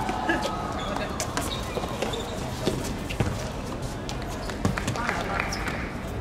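Footballers shouting to each other during play, with scattered sharp knocks of the ball being kicked and shoes on the hard court over steady background noise; the loudest knocks come about three and four and a half seconds in.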